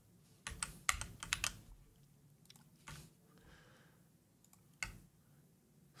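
Computer keyboard keystrokes: a quick run of clicks about half a second to a second and a half in, a few scattered taps around three seconds, and a single one near the end.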